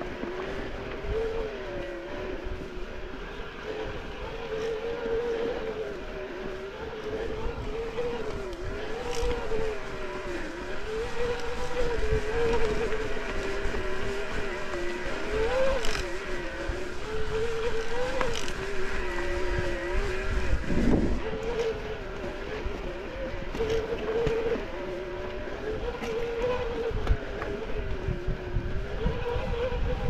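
Electric mountain bike motor whining, its pitch rising and falling as the rider pedals and changes speed, over the rumble and rattle of tyres on a rocky dirt trail. There is a heavier knock from a bump about two-thirds of the way through.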